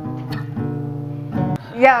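Two steel-string acoustic guitars letting the final strummed chord of a song ring out, held steady and stopping about one and a half seconds in. Near the end a voice breaks in loudly with "yo".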